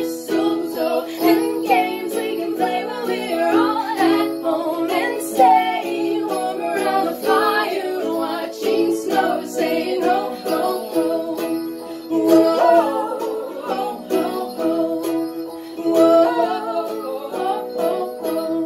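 Two women singing a Christmas pop song in harmony, accompanied by an electronic keyboard holding chords, a strummed ukulele and jingle bells worn on a foot.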